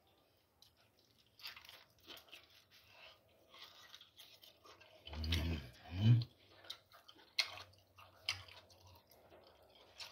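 A person chewing and biting into a chunk of cooked meat, with many small wet mouth clicks and smacks. Two short vocal sounds come from the eater a little after the middle, the second the loudest.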